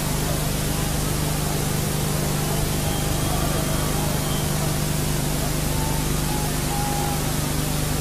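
Steady hiss with a constant low hum, the noise floor of an old broadcast tape recording; no distinct cheering or other event stands out above it.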